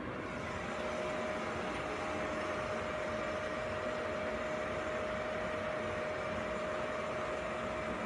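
Steady machinery noise with a constant mid-pitched hum, running evenly throughout.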